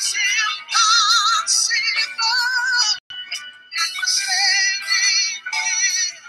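Music with a high singing voice carrying a wide, wavering vibrato, sung in phrases a second or two long with short breaks between them.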